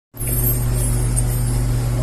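A steady low hum with a faint hiss, starting abruptly just after the beginning and holding at an even level.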